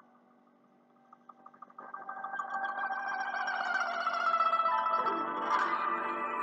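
Background instrumental music. It drops almost to silence for the first two seconds, then comes back in and holds steady.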